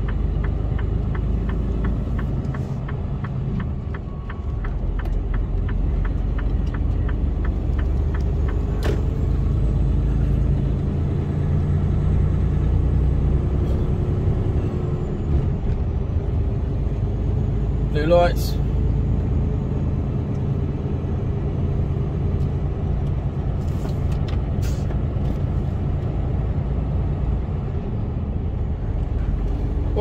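Inside a Mercedes-Benz Actros truck cab, the diesel engine is running on the move with a steady low drone, and its note rises as the truck pulls away. For the first several seconds the indicator ticks at an even pace.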